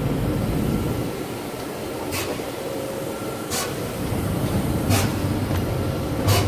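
Steady rumbling ambience of a large train station hall beside the tracks. From about two seconds in there are four short hiss-and-thud bursts, evenly spaced about a second and a half apart.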